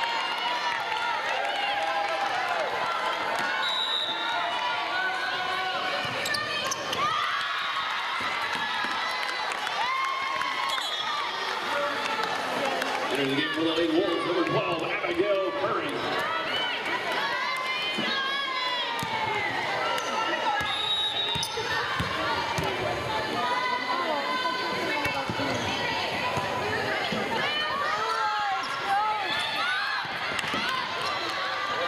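Volleyball match sounds in a gym: the ball being struck and bouncing on the hardwood court at intervals, over a constant chatter of players' and spectators' voices.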